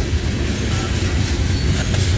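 Loaded coal hopper cars of a freight train rolling past, a steady low rumble of steel wheels on the rails.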